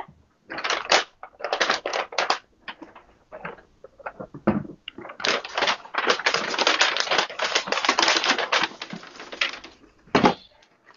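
Tissue paper and plastic wrapping rustling and crinkling as a cardboard shoebox is unpacked. There are a few short spells of rustling in the first couple of seconds, then near-continuous crinkling from about five seconds in until just before the end.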